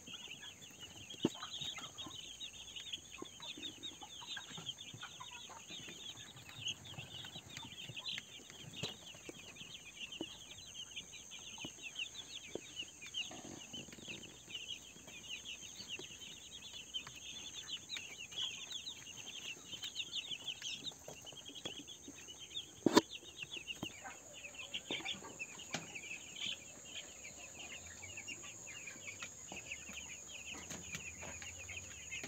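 A flock of young broiler chicks peeping continuously, a dense chorus of short high cheeps. A single sharp click cuts through about three quarters of the way in.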